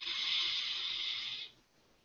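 A long breath taken close to a microphone, heard as a hiss lasting about a second and a half.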